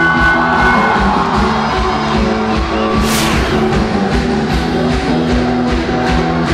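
Live rock band playing: drums and bass under sustained chords, with a cymbal crash about halfway through.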